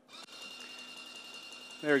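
Electric grout injection pump running with a steady whine and low hum while flushing cleaner through the gun to purge the polyurethane grout.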